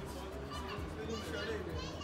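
Shopping-mall crowd voices with a child's high-pitched voice calling out from about a second in, over a steady low hum.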